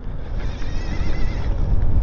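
Wind rumbling on the microphone of a moving e-bike. A faint, steady high-pitched whine from the CYC X1 Stealth mid-drive electric motor comes through in the middle.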